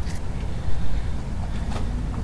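Steady low background rumble, with a few faint light clicks.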